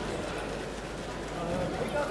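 Indistinct chatter of many people talking at once in a large hall, with a single voice standing out near the end.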